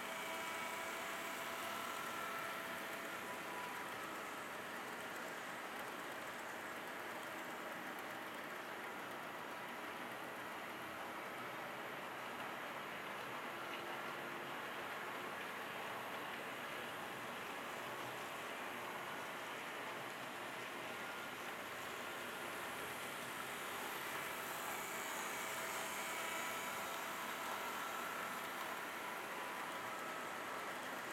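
HO scale model trains running on sectional track, a steady rolling rush of small wheels on rail. A faint motor whine comes up near the start and again near the end as the trains pass close.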